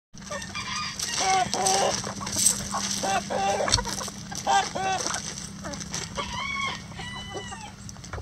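A flock of backyard hens clucking and calling over one another in short, overlapping bursts while they peck at a treat, the contented sounds of happy hens. Near the end one bird gives a longer, drawn-out call.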